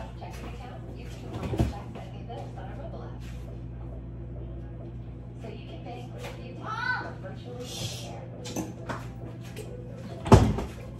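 Off-camera kitchen handling: scattered soft knocks and clicks, with a thud about one and a half seconds in, over a steady low hum. A brief rising voice-like sound comes near seven seconds in.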